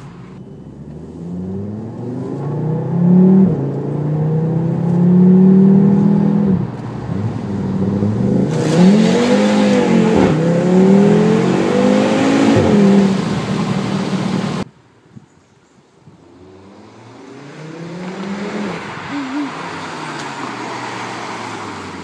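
Stage 1 remapped Audi RS3's turbocharged five-cylinder engine under hard acceleration, heard from inside the car: the engine note climbs and drops back at each upshift. It cuts off abruptly about two-thirds of the way through, then the engine is heard revving again, more faintly.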